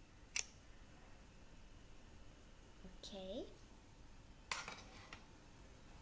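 Metal squeeze-handle ice cream scoop working against a ceramic bowl: one sharp click about half a second in, and a short run of clicks a little past the middle as a scoop of ice cream is released.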